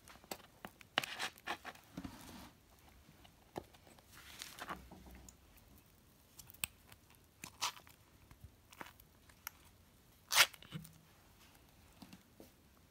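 Ring-pull tin of liver pâté being opened by hand: clicks of the pull tab and short scraping, tearing stretches as the metal lid peels away. A single sharp click about ten seconds in is the loudest sound.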